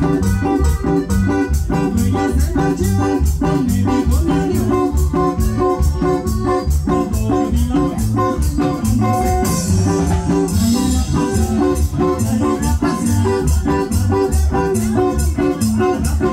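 Live regional Mexican dance band playing an upbeat cumbia. An electronic keyboard with an organ sound carries the tune over a steady, pulsing bass and percussion beat, with a brief high rushing hiss about ten seconds in.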